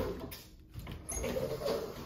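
White bifold closet door being pushed open, rattling and sliding on its track, with a sharp click about a second in.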